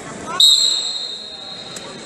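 Referee's whistle: one loud, steady, high-pitched blast about half a second in, fading over about a second, signalling the wrestlers to start wrestling.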